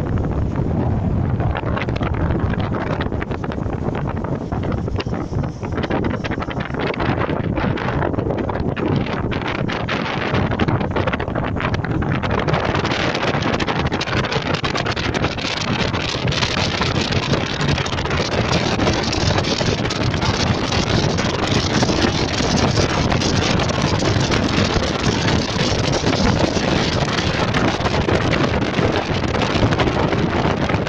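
Wind rushing over the microphone and road noise from inside a moving car on a winding mountain road, a steady noisy rush that grows louder and brighter about twelve seconds in.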